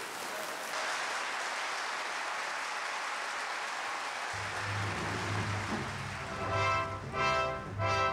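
Large indoor audience applauding. About four seconds in, music enters beneath the clapping with a low held bass note, and a melody builds as the applause dies away.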